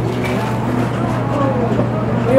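Faint overlapping voices of customers and staff at a busy fast-food counter, over a steady low hum.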